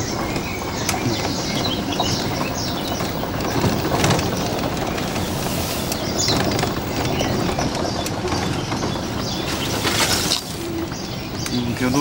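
Many small birds chirping and calling in a garden over a steady background hum. A brief hiss comes about halfway through and again near the end.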